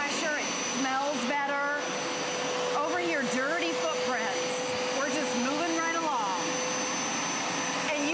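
Hoover Power Scrub Elite upright carpet cleaner running as it is pushed back and forth over carpet, its motor giving a steady whine over an even suction rush.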